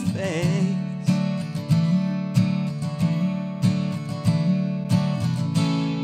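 Acoustic guitar strummed in a steady rhythm, with a sung note trailing off in the first second.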